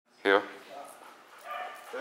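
A dog gives a single short, loud bark about a quarter of a second in, followed by softer voices.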